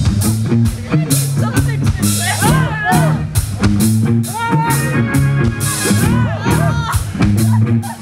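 Live rock band playing loudly: electric guitars and a drum kit, with a lead line of bending, sliding notes over steady low notes and a regular drum beat.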